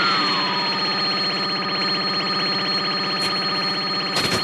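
Synthesized anime electric-charge sound effect: a falling whistle that dies away about half a second in, under a steady, fast-pulsing electronic buzz with a thin high whine.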